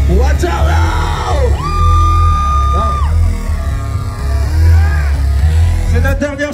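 Live heavy rock band playing loud, with a heavy bass, and the vocalist yelling over it; one high note is held for over a second about a second and a half in.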